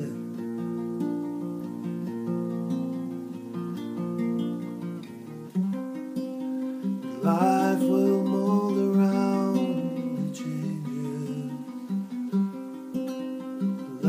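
Classical-style acoustic guitar playing an instrumental passage between sung lines. It holds softer chords for the first half, then plays louder, fuller strummed chords from about halfway through.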